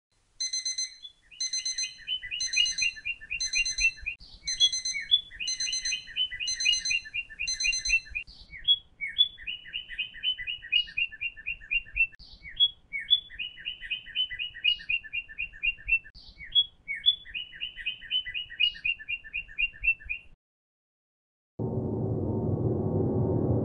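A phone alarm with a birdsong tone: mechanically regular bird chirps and twitters, repeating about once a second and then as quick trills, until it is cut off abruptly near the end as it is switched off.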